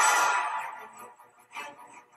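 Action film soundtrack playing back: a loud rush of noise with music under it that fades away over about the first second, leaving only a faint sound.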